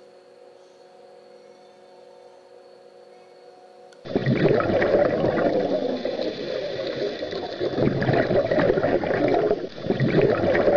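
Faint steady hum of the reef aquarium's sump equipment, a few fixed tones. About four seconds in it cuts abruptly to a loud underwater water sound of bubbling and gurgling, which carries on to the end.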